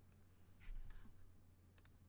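Near silence with faint handling noise of trading cards in plastic cases held in gloved hands: a soft rustle just under a second in, then two quick clicks near the end.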